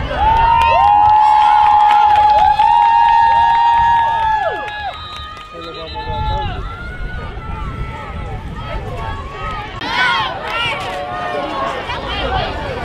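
Spectators yelling during a play. For the first four seconds or so, several long, high-pitched held shouts overlap. Shorter scattered shouts and crowd voices follow.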